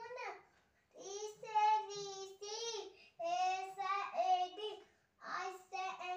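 A young boy chanting the Hindi alphabet in a sing-song voice, drawing out each syllable, with two short pauses.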